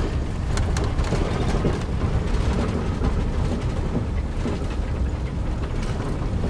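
Steady low rumble of a vehicle driving over snow-packed ground, heard from inside the cab, with a couple of light clicks about half a second in.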